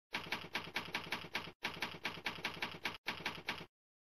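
Typewriter keys striking at a steady rate of about five a second, in three runs broken by two brief pauses.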